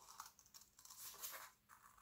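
Faint snipping and rasping of scissors cutting through folded black construction paper, a few short cuts.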